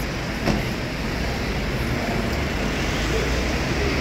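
Steady road-traffic noise of cars moving and idling close by, with one short knock about half a second in.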